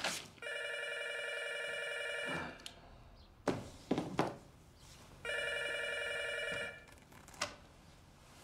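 Desk telephone ringing twice, each a trilling ring of about two seconds, with a few short handling sounds at the desk between the rings.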